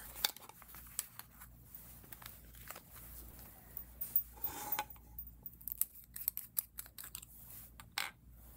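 Light clicks and taps of a fountain pen being taken apart by hand, with its parts set down on a wooden board.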